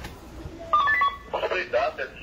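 A quick series of short electronic beeps at a few different pitches, followed by a person talking.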